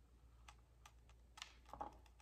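Near silence with a handful of faint, light clicks from a necklace being handled and turned over.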